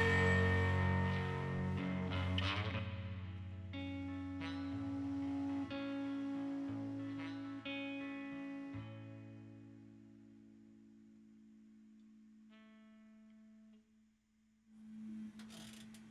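The band's last chord decays into a few slow guitar notes, each held and ringing for a second or two. They fade to near silence about ten seconds in, and one faint note follows a little later.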